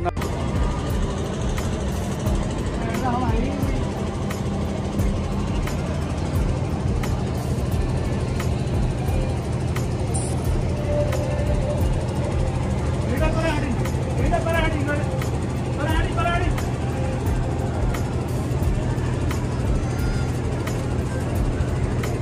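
A steady low mechanical drone runs throughout, with faint distant voices or singing coming through around the middle.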